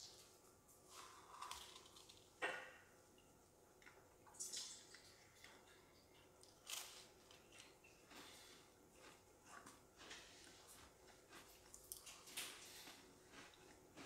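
Faint, wet mouth sounds of teeth scraping the creme filling off a Neapolitan Joe-Joe's sandwich cookie. A few short, soft smacks stand out from the near silence.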